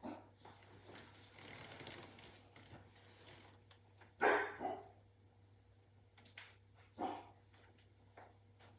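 A puppy barking: a loud double bark about four seconds in and a single bark about three seconds later.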